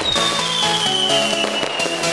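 Electronic dance music with firework bangs and crackling mixed in, and a high tone sliding slowly downward.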